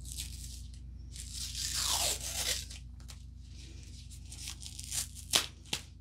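Blue painter's tape being peeled off a rolled canvas wrapped in foam sheet: a drawn-out tearing noise for about a second and a half, then a few sharp crackles near the end.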